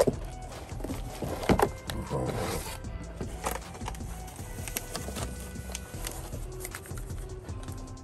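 Background music, with scattered knocks and rustles from an RC rock crawler being lifted out of its foam packaging tray. The sharpest knock comes about a second and a half in.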